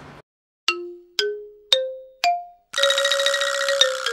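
Edited-in transition jingle: four struck, bell-like notes rising in pitch about half a second apart, then a fuller, busier passage of music for the last second or so.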